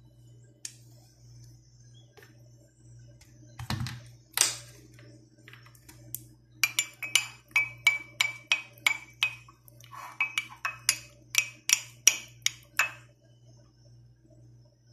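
Basting brush stirring sauce in a ceramic mug, clinking against the mug's sides in a run of sharp ringing taps, about two or three a second, through the second half. A bump and knock come about four seconds in.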